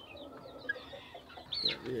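Chickens in a coop: faint high cheeping and clucking, with one short louder call about one and a half seconds in.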